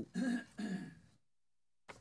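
A man's short throat-clearing sound in the first second, followed by a brief silent pause.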